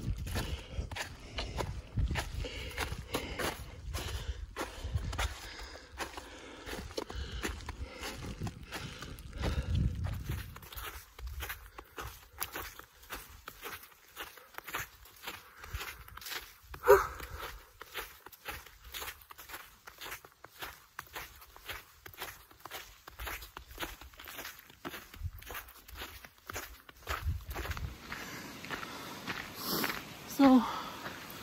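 A hiker's footsteps walking on a snowy trail, a steady run of short steps. A gusty low rumble sits under the first third, and a single brief pitched sound stands out just past the middle, the loudest moment.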